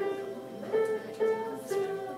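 Electronic keyboard playing a simple single-note melody, one note at a time at about two or three notes a second, each note held briefly before the next.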